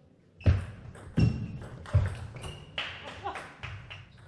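A table tennis rally. The celluloid-type ball knocks sharply off rackets and table: three loud knocks in the first two seconds, then quicker, lighter clicks, with short squeaks of shoes on the court floor.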